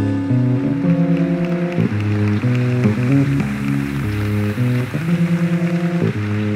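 Live jazz-fusion band playing: held chords and notes that change about once a second over a soft wash, with a quick run of repeated notes near the end.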